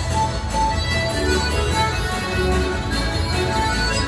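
Live Irish céilí band music for set dancing: a dance tune played at a steady, even beat.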